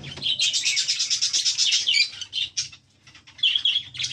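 Budgerigars chattering in a fast run of high, rapid chirps. The chatter breaks off briefly about three seconds in, then resumes.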